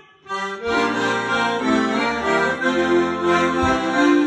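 Piano accordion playing an instrumental passage between sung verses. After a short pause it comes in about half a second in, with a melody over steady sustained bass and chord notes.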